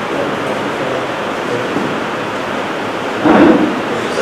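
Steady loud hiss of background noise, with a short louder sound a little over three seconds in.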